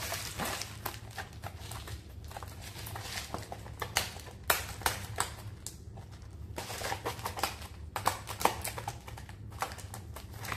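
Plastic shrink-wrap on a Nongshim instant noodle bowl crinkling and crackling as fingers pick at it and turn the bowl, trying to open it: irregular sharp clicks and crackles.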